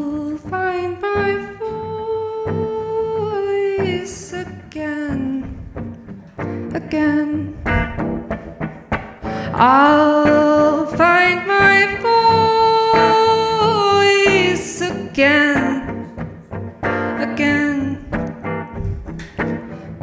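A solo singer holding long sung notes with gentle glides between them, over a quieter electric guitar accompaniment. The singing swells loudest from about ten to fifteen seconds in.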